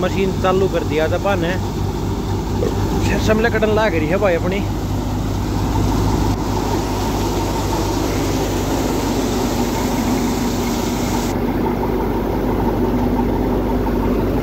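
Tractor-powered hadamba thresher working mustard, with a steady machine drone of its drum and the tractor's diesel engine under load. A man speaks briefly over it in the first few seconds.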